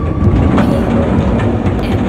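Sliding side door of a Hyundai Starex van unlatching and rolling open on its track: a loud, continuous rattling rumble.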